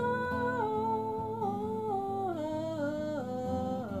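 A wordless sung or hummed vocal line, held notes stepping down in pitch one after another, over a strummed acoustic guitar.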